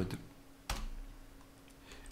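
A single sharp computer keyboard keystroke about two-thirds of a second in, the Enter key running a command, over a faint steady hum.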